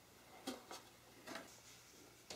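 Near silence with a few faint, soft knocks and rustles of cardboard packaging being handled: the first about half a second in, another a little over a second in.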